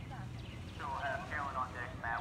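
Indistinct voices talking, starting about a second in, over a low steady hum.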